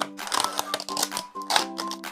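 Background music, with several sharp clicks and crackles from a clear plastic takeout lid being pulled off a soup bowl.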